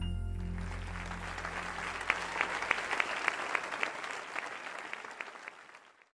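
An audience applauding as the song's last low chord fades out. Single sharp claps stand out from about two seconds in, and the applause dies away near the end.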